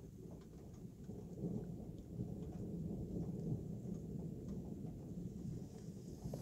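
Distant rolling thunder, a continuous low rumble that grows louder about a second and a half in, with faint ticks of rain.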